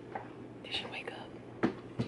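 A woman whispering softly, in short breathy phrases. A single sharp tap sounds about a second and a half in.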